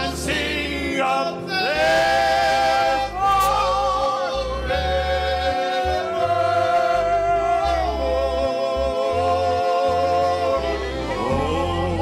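Male gospel trio singing in close harmony on long held notes with vibrato, accompanied by fiddle.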